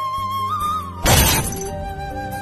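Background music with a single held melody line, cut about halfway through by a loud glass-shatter sound effect lasting about half a second, after which the music carries on.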